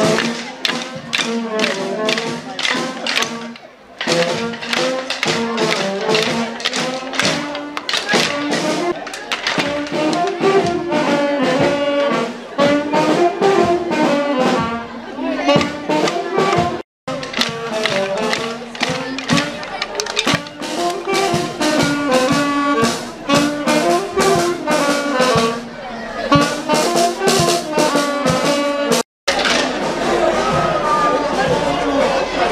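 Brass band playing a lively tune with a steady beat, trumpets and trombones carrying the melody. The sound drops out for an instant twice, about halfway through and near the end.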